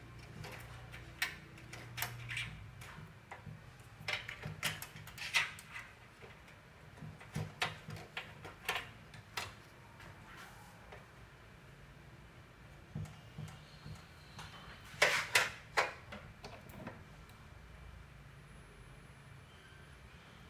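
Scattered light clicks and taps of the glass fluorescent backlight tubes and their plastic holders being handled in an opened LCD TV backlight frame, with the loudest knocks about fifteen seconds in. A low steady hum runs underneath.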